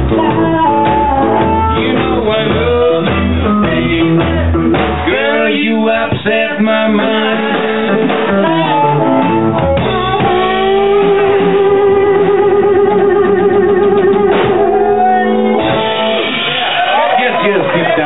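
Live blues band with electric guitar, upright bass, drums and harmonica playing through the end of a song. Bass notes pulse steadily for the first few seconds, then the band thins out, and a long wavering held note rings out before the close.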